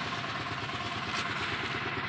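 Steady running of a nearby motor vehicle engine, as of a motorcycle, with an even, unbroken noise.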